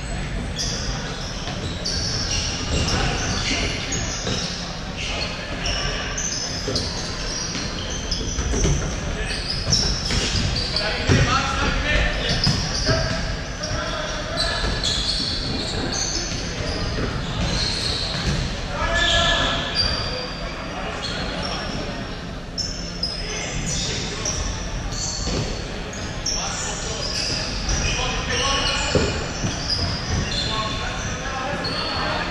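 Futsal being played on a hardwood court in a large hall: the ball thudding off feet and the wooden floor, shoes squeaking in short chirps, and players' shouts, all echoing in the hall.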